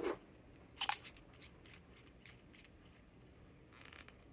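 Small clicks of a Jinhao X750 fountain pen being handled and put back together after filling: one sharp click about a second in, then a run of faint ticks as the barrel is worked back onto the section.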